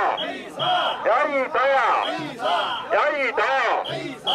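Mikoshi bearers chanting together as they carry a portable shrine: a rhythmic group chant of rising-and-falling shouts, about one a second. Short, high, steady tones cut in a few times.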